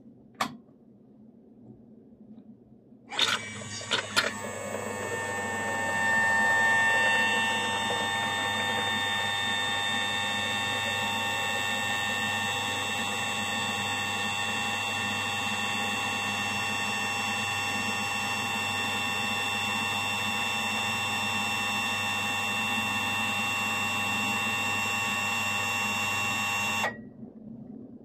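An MD-50 dispensing machine's magnetic-coupling gear pump and motor run with a steady whine while pumping liquid soap into a bottle. The pump starts with a few clicks about three seconds in and cuts off suddenly near the end, once the dose is dispensed.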